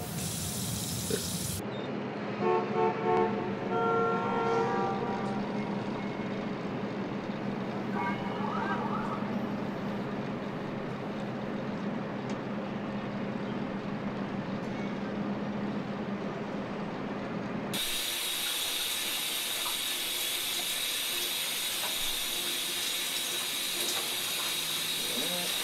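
A steady low hum with a few short pitched tones early on, then about three-quarters of the way through the sound cuts to a shower running, a steady hiss of spray.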